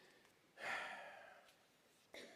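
A man's audible breath, like a sigh, starting about half a second in and fading away over about a second.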